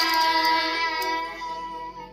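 Children singing a Malay devotional song together, holding one long note that fades away over the last half-second.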